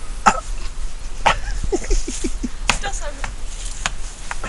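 A person's voice in a quick run of short, pitched bursts, over a steady low rumble and several sharp clicks.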